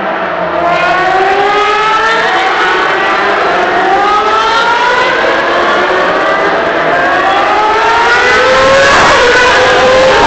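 Formula 1 cars' 2.4-litre V8 engines revving high on the warm-up lap, several cars overlapping. Their pitch climbs gear after gear in a string of rising whines, and one car passes close near the end.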